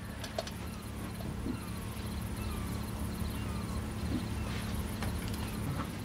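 Quiet night ambience: crickets chirping in an even, repeating pulse over a low steady hum.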